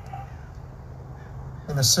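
A short bird call, once, right at the start, over a steady low hum; a man's voice starts speaking near the end.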